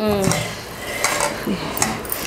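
Stainless-steel pots and a metal spoon clinking and clattering as cookware is handled on a gas stove.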